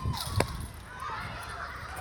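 Faint, distant children's voices calling out from a schoolyard, with a couple of sharp clicks near the start.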